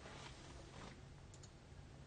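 Near silence: faint room tone with a low steady hum and one faint click about a second and a half in.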